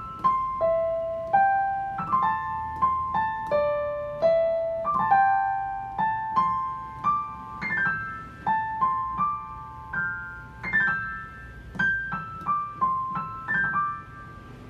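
Yamaha digital piano played one-handed in a piano voice: a single pentatonic melody line in the upper middle register, with quick sweeping grace-note runs into several phrases, a technique meant to sound like a guzheng.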